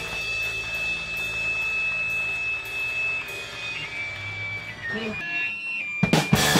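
Electric guitar feedback between songs: a thin, high whine from the amp, held and stepping down in pitch a few times, with a short wavering tone near the end.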